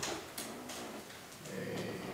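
A pause in a man's speech: quiet room tone with a couple of faint clicks about half a second in, then a brief low voice sound near the end.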